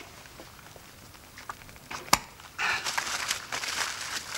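Wrapping paper being handled and torn open on a small gift parcel: a few light ticks, one sharp click about halfway through, then a dense run of rustling and crinkling.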